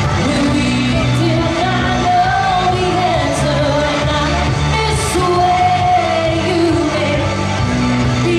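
A female singer singing a pop song live into a microphone over loud amplified backing music, heard through a PA system; the music is steady with a wavering sung melody over a repeating bass line.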